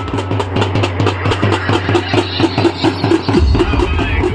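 Drums beaten in a fast, even rhythm of about five strokes a second, over a steady low hum that shifts near the end.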